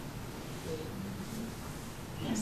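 Quiet room tone in a small meeting room: a steady low hiss, with a couple of faint, brief low murmurs partway through.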